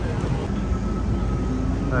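Steady low rumble of city street traffic, with a faint thin whine through the middle.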